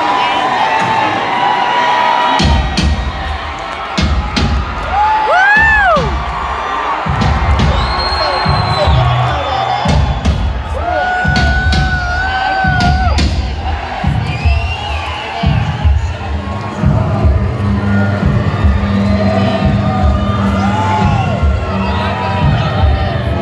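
Loud live industrial rock music from a large outdoor concert crowd, with a heavy low beat. The crowd cheers over it, with high shouts and whistles rising out of the noise every few seconds.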